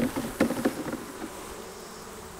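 Honeybees buzzing as they are shaken off a brood frame into a sampling funnel, loudest in the first moment with a sharp knock about half a second in, then settling to a steadier, fainter hum.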